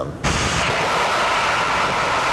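Rocket motor firing: its exhaust noise starts abruptly about a quarter second in and then holds as a steady, loud rushing.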